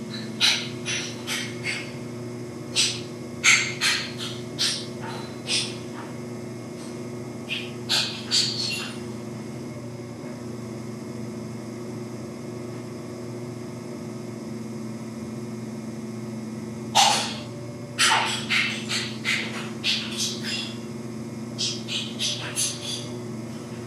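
Electric pottery wheel motor humming steadily, with clusters of short wet squishes and clicks from wet hands and a sponge on the spinning clay as the wall is pulled up. The squishes come at the start, again around eight seconds, and from about seventeen seconds on.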